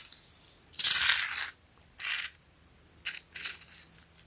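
A small retractable tape measure being handled and reeled in. There are three short rattling bursts: about a second in, at two seconds, and again after three seconds.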